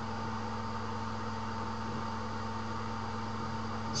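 Steady background hum and hiss with a few constant low tones, unchanging throughout and with no distinct events.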